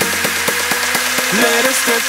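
Electronic dance music with a steady beat and synth tones that bend in pitch near the end.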